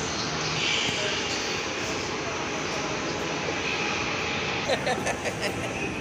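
Steady shopping-mall ambience: an even, broad rush of hall noise with faint background voices, and a few short clicks about five seconds in.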